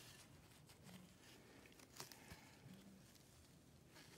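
Near silence: faint handling of a resin-coated panel by gloved fingers, with one small sharp click about two seconds in.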